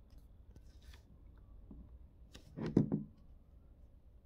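Faint steady buzz from a 24 V, 4 A switching power brick with nothing connected to its output: a fault in this particular unit. About two and a half seconds in, a short knock and rub as the brick is picked up and turned over.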